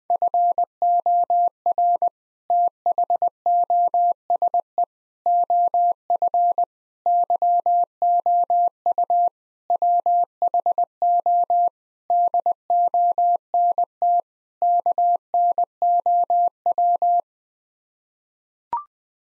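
Computer-generated Morse code at 20 words per minute: a single steady tone keyed into dots and dashes, sending the seven words "FOR THOSE OF YOU WHO DON'T KNOW" in seven groups with short pauses between words. It stops about a second before the end.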